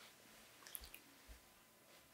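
Near silence: room tone, with a few faint clicks a little under a second in and a soft low thump shortly after.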